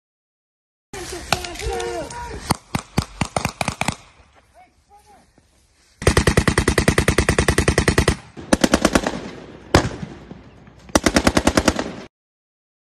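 Soldiers' rifles firing. Scattered shots mixed with shouts come first, then long rapid bursts of automatic fire at more than ten shots a second, a single loud shot, and a last burst near the end.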